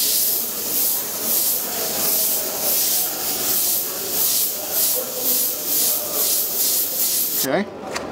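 Airbrush hissing in short, rapid bursts, about two a second, as the trigger is worked for small dagger strokes. The spraying stops suddenly near the end.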